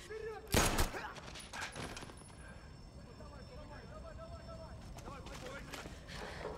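A quick volley of gunshots about half a second in, followed by a few fainter, scattered shots.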